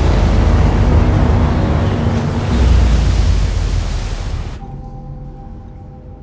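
Storm at sea: a loud, steady roar of wind and heavy waves over a deep rumble. About four and a half seconds in it cuts off suddenly to a quieter low drone with faint held tones.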